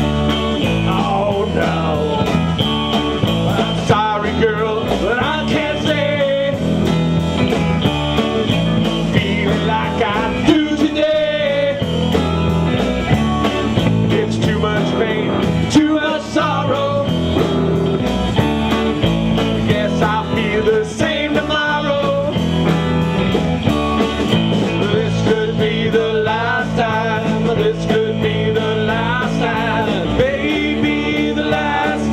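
A live blues-rock band playing: several electric guitars through amplifiers over a drum kit keeping a steady beat, with bending lead lines.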